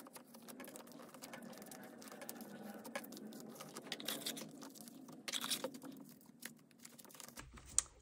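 Soft, irregular clicks and light rustles of plastic binder sleeve pages as photocards are slid into their pockets. The sound is quiet throughout.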